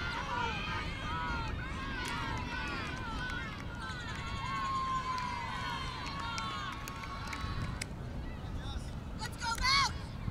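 Players and teammates on the sideline of a women's ultimate frisbee game calling and shouting to one another during play, many short overlapping calls over a steady low noise. A louder rising shout comes near the end.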